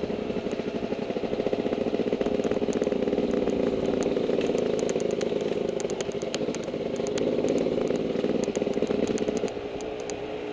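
Dirt bike engine running under throttle while riding a dirt trail, with scattered light clicks and rattles. The engine note drops near the end as the throttle is eased off.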